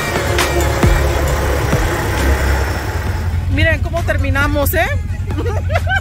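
Background music with a regular beat over the low rumble of quad-bike (Can-Am ATV) engines; about three and a half seconds in the music gives way to people's voices over the engines running.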